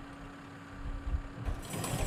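Horse-racing starting gate springing open with a mechanical clatter and low thuds. A high ringing comes in near the end, the starting bell as the horses break.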